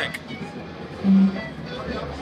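A short, loud low note from an amplified guitar about a second in, held steady for about a third of a second, over faint background music and chatter.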